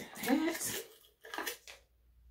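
A short vocal sound from a woman, then the handling of a plastic gummy-vitamin bottle as its cap and seal are worked open: a brief rustle and a couple of clicks.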